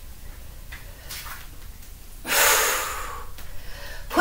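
A woman breathing hard with exertion while holding a plank. Fainter breaths come about a second in, then one loud, rushing breath a little after two seconds in that lasts under a second.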